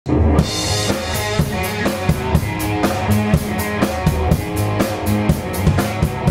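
Live band playing amplified electric guitars over a drum kit, with bass drum, snare and a steady run of cymbal strokes; it opens on a cymbal crash.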